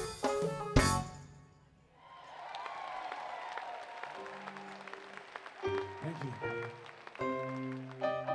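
A live band ends a song with a few sharp hits, then an audience applauds and cheers. Keyboard and bass start playing softly under the applause, and fuller chords come in near the end.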